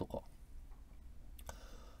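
A single short click about one and a half seconds in, over low room tone.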